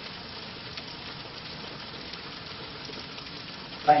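Steady, even background hiss of room tone and recording noise in a lecture room, with no distinct events; a single spoken word comes right at the end.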